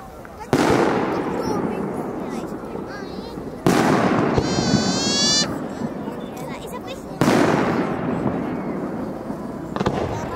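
New Year's fireworks shells bursting overhead: three loud booms about three and a half seconds apart, each followed by a long rolling echo. A high whistle rising slightly in pitch lasts about a second after the second boom, and a sharp crack comes near the end.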